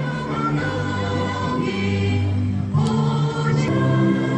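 Music with a choir singing long held notes, the chord changing every second or so.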